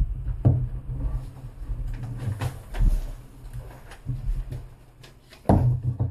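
Paper pages of a picture book being turned and handled: soft rustles and several scattered light knocks.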